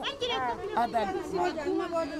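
People talking and chattering, with voices overlapping.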